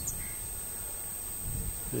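Open-field outdoor ambience: a low, steady rumbling noise on the microphone, with one faint, brief bird chirp just after the start.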